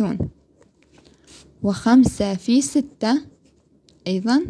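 A pen writing numbers on paper, faint scratching strokes in the pauses, with a woman speaking briefly in the middle.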